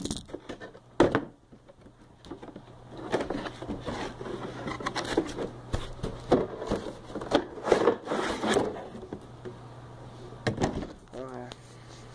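Handling noise from opening a gold panning kit box and taking out its plastic pans and parts: irregular rustling and scraping, with sharp knocks about a second in and again near the end.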